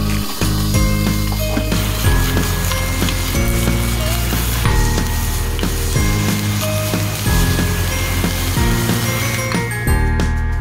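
Meat sizzling as it fries in olive oil in a small pan, with a steady hiss and light clinks of a spoon stirring it, under background music.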